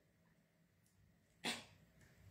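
Near silence, broken about one and a half seconds in by a single short, noisy breath close to the microphone.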